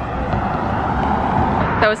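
Road traffic on a city bridge: a steady rush of passing cars' tyres and engines.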